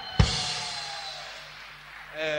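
A drum kit flourish that ends in a single crash-cymbal and bass-drum hit, the cymbal ringing and fading away over about a second and a half.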